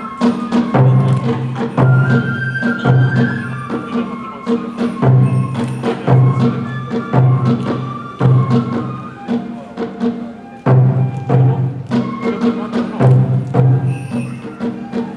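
Kagura festival music: a bamboo flute melody over a steady drum beat, about one stroke a second, with sharp clacking percussion. The drum drops out for a moment after about nine seconds and comes back in strongly.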